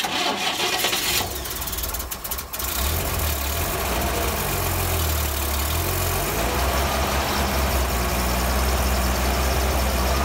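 A 1956 Pontiac's GM straight-six engine cranks on the starter for about two and a half seconds, catches and settles into a steady idle. This is a successful start on its newly fitted Pertronix electronic ignition, which replaced the points and condenser.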